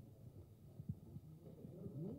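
Faint low room rumble with a few soft, dull thumps, the clearest about a second in.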